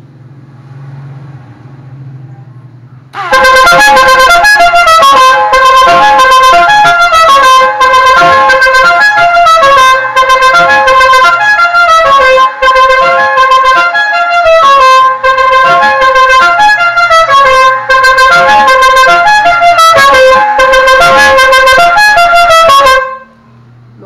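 Seger five-trumpet 24-volt musical air horn, fed by its electric air pump, playing a tune of changing notes for about twenty seconds, very loud, with a musical tone. It starts about three seconds in and cuts off about a second before the end.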